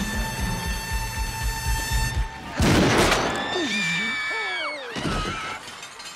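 Movie soundtrack: tense score with a pulsing low beat and held notes, broken about two and a half seconds in by a loud crash. Drawn-out tones follow, sliding down in pitch and fading.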